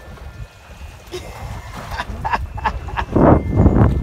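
Wind buffeting the microphone on an open boat at sea, a steady low rumble with a few short clicks in the middle. A louder noisy rush comes in the last second.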